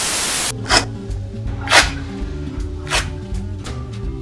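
A half-second burst of TV-style static hiss used as an editing transition, then background music with a steady bass beat and a few sharp hits.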